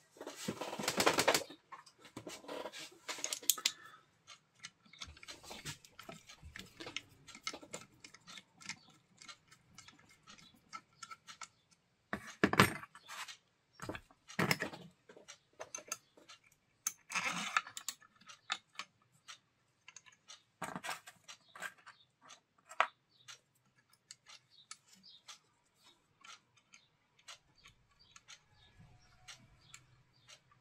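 Small metal parts clicking and clinking against an alternator housing as long through-bolts and washers are slid in and started by hand, with a few louder knocks near the start and about halfway through.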